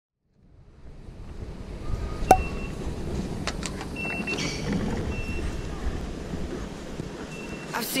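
Underground station ticket-barrier ambience: a steady low rumble, with several short high beeps from the contactless gate readers and sharp clicks of the barrier paddles. The sound fades in about half a second in.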